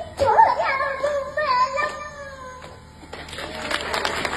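A toddler singing into a microphone, his high voice bending in pitch through the first two and a half seconds. A stretch of rough noise follows near the end.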